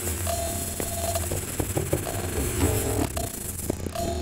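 Experimental electronic music: a steady low drone with a held mid-pitched tone that comes and goes, and scattered short clicks.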